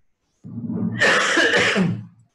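A person coughing: one loud, rough sound starting about half a second in, swelling about a second in and lasting about a second and a half.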